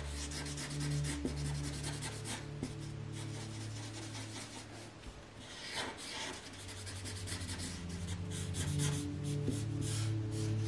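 Felt-tip marker rubbing and scratching on paper in quick repeated back-and-forth strokes as an area is coloured in, over soft background music with long held low notes.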